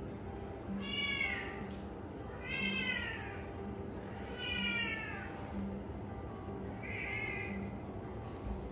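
A kitten meowing four times, about two seconds apart, each call arching up and then down in pitch, over background music with a steady beat.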